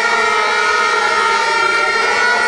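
A loud, steady siren-like tone with overtones, holding one pitch without rising or falling, with crowd voices faintly beneath.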